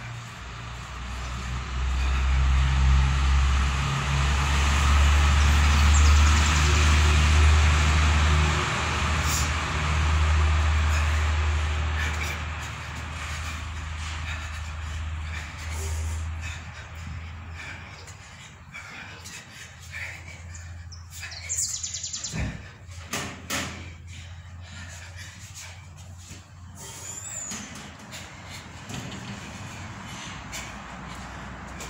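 A heavy engine running nearby, a low steady hum that swells over the first few seconds, stays loud, then fades away a little past halfway. A few sharp clicks come about two thirds of the way through.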